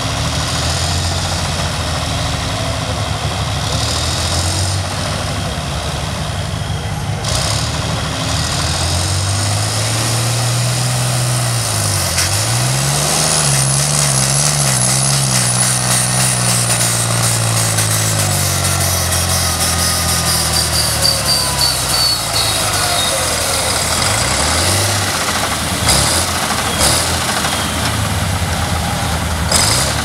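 Modified vintage pulling tractor's diesel engine at full throttle hauling the pulling sled. The revs dip sharply about twelve seconds in and climb back, with a high whistle above them that rises and then slides down. The revs fall away in the last third as the pull ends.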